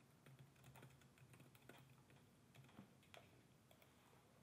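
Faint typing on a computer keyboard: soft, irregular key clicks.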